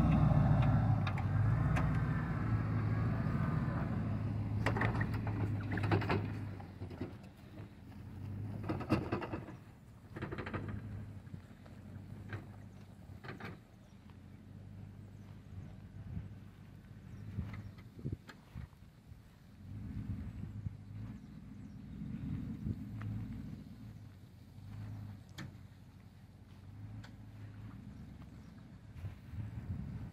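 SUV engine running at low speed as it tows a tree trunk across the pasture, loudest at first while close, then fading and swelling again about two-thirds of the way through. Several sharp knocks sound in the first half.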